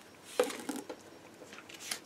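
Soft handling sounds of papercraft pieces on a craft mat: card and a thin cutting die being moved and set down, with a few light taps and rustles about half a second in.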